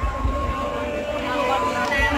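A voice over loudspeakers sings or chants in long held, slowly gliding notes, with a steady low rumble underneath.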